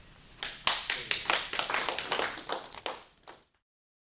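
Audience clapping, beginning about half a second in, then cut off suddenly just after three seconds.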